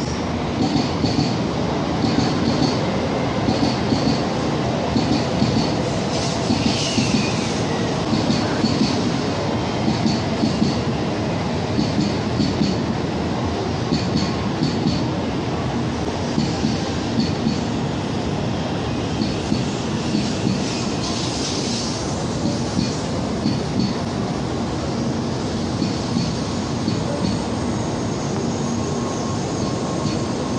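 Tokaido Shinkansen train rolling slowly in along the platform: a steady rumble of the cars with regular clacks from the wheels. There are brief wheel squeals, one falling in pitch about seven seconds in and another near the end.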